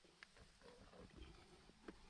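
Near silence, with faint low rustling and a couple of tiny clicks from a climber's hand and body moving against sandstone rock.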